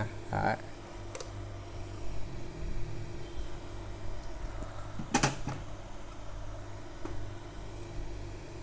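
Steady low hum, with a short, sharp burst of sound about five seconds in.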